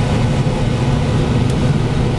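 Steady drone of a 425 hp combine harvester's engine and threshing machinery, heard from inside the cab while it cuts soybeans.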